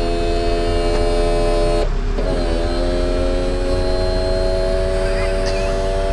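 The electric roof pump of a Daihatsu Copen's power-folding hard top runs with a steady whine as the roof goes down. It stops briefly about two seconds in, then starts again at a slightly different pitch as the mechanism moves on to its next stage.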